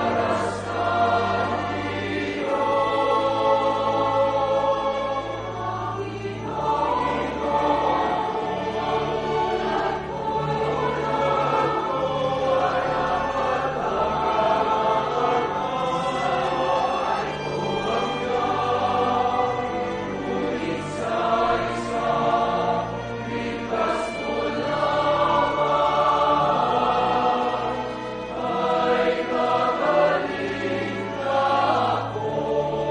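Church choir singing a communion hymn, with instrumental accompaniment holding long bass notes that change every few seconds.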